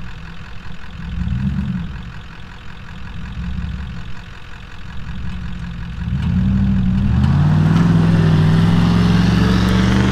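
Jeep engine running low and uneven, then about six seconds in revving hard and holding high as the Jeep accelerates on loose dirt, tyres spinning and spraying dirt. It is under heavy load, snatching a stuck 2wd service truck out of a hole on a kinetic rope.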